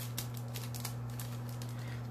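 Gift-wrapped paper package being handled: a string of small, irregular crackles and rustles of paper and ribbon. A steady low hum runs underneath.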